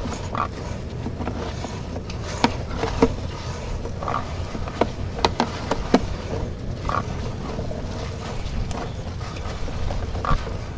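A sewer inspection camera on its push cable being fed quickly along a drain pipe: a steady low rumble with scattered sharp clicks and knocks, clustered in the middle few seconds.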